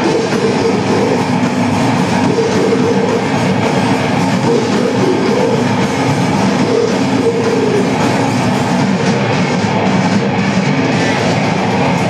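Grindcore band playing live: distorted guitars and bass over a drum kit, a loud, dense wall of sound that never lets up.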